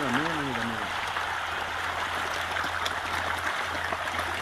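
Steady rushing of water, with a man's voice trailing off in the first second.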